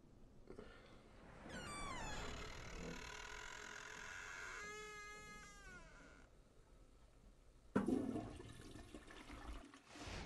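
High whining sounds whose pitch falls, then from about eight seconds in a sudden rushing noise of water, like a toilet flushing.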